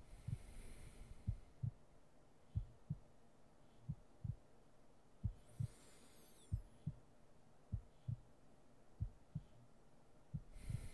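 Slow heartbeat in paired low thumps (lub-dub), about one beat every 1.3 seconds, steady throughout. Soft breaths come in once near the start and again about halfway through.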